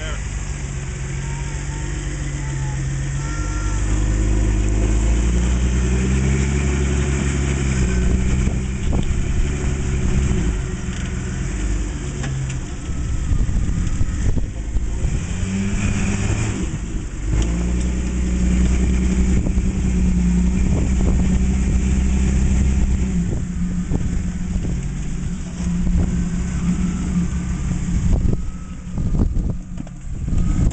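Rock-crawler buggy's engine working under load as it climbs boulders, revving up and easing off several times, its pitch rising and falling, and dropping back near the end.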